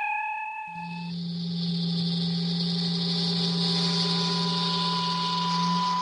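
Electronic sci-fi sound effect: a bright chime-like tone fades out within the first second, then a steady low hum sets in with a hissing shimmer building above it. A thin high tone grows louder near the end.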